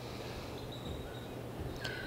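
Quiet outdoor ambience: a steady low hum under a faint hiss, with a few faint, thin high chirps about halfway through.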